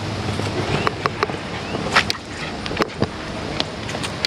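Handheld camera being moved about: rustling handling noise with about half a dozen sharp clicks and knocks scattered through it.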